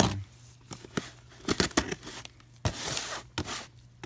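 Utility knife slicing through clear packing tape on a cardboard box: short tearing, rasping strokes with scattered sharp clicks of the blade and cardboard.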